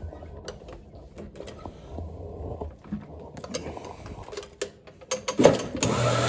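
Scattered clicks and rattles from a rotary floor machine being handled on carpet, then the machine's motor starts near the end and runs with a steady hum and hiss.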